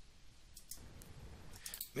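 Faint computer mouse clicks, a few scattered and a quick cluster near the end, over quiet room hum.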